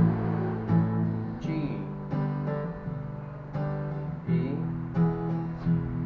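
Acoustic guitar strummed in a steady down-and-up rhythm, with strokes about every two-thirds of a second. The chords ring between strokes and change every couple of seconds.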